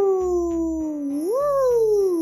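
A woman's voice imitating an airplane in flight with a long, smooth 'wooo'. Its pitch falls slowly, swoops up about halfway through, then falls again.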